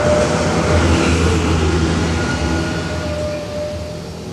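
Beatless opening of a psytrance track: a low rumbling drone under a noisy wash, with a few faint held tones. It swells about a second in and then slowly fades.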